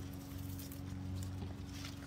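Tomato vines and their leaves rustling and crackling as they are pulled and handled, a scatter of faint short clicks, over a steady low hum.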